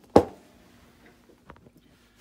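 Pistol slide stop pushed home into the frame of a Phoenix Trinity Honcho: one sharp metallic click with a brief ring just after the start, then a faint tick about a second and a half in.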